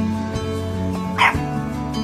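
A bulldog puppy gives one short, high yip about a second in, over background music with steady held notes.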